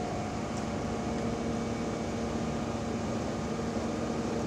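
Fire apparatus diesel engine running steadily, a constant drone with a held hum.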